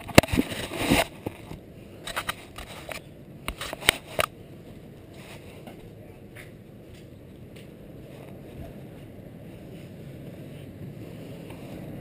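GoPro Hero 2 camera being handled and fitted to the body, with rubbing, scraping and knocking of the camera against clothing during the first four seconds. Then about eight seconds of low, steady outdoor rumble picked up by the moving camera.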